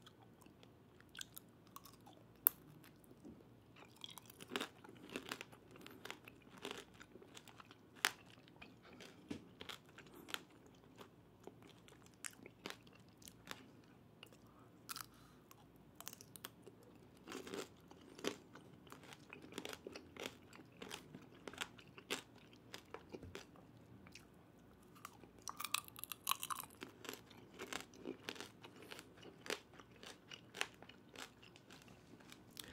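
Close-miked biting and chewing of tanghulu, skewered fruit in a hard candied-sugar shell: the shell cracks and crunches in sharp clicks, bunched in several bursts, between softer, wetter chewing.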